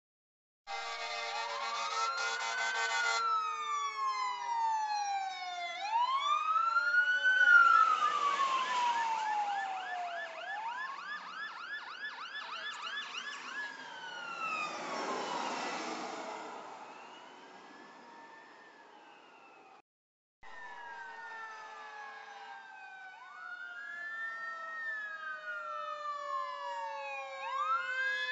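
Several fire-engine sirens passing close by. They mostly wail, each sweep rising then falling, with a stretch of fast yelping around the middle and lower tones sliding slowly down beneath. A steady horn blast sounds about a second in.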